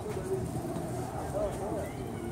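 Indistinct voices over a steady outdoor background hum, with a few short low curved calls or syllables in the middle.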